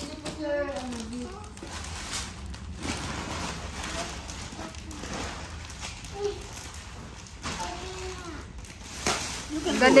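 Crackling and rustling of shiny metallic-foil gift wrap as it is pulled and torn open by hand, with faint children's voices underneath.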